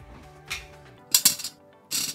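Small plastic toy figures dropped one by one into a metal tin, clinking against the metal: several sharp clinks, the loudest a little past halfway. Background music plays underneath.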